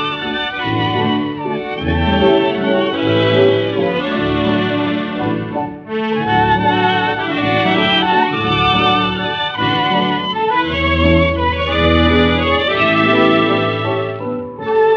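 Instrumental passage of a dance-orchestra Viennese song medley played from a 1932 shellac 78 rpm record, digitised and cleaned of surface noise. The music briefly thins out about six seconds in before continuing.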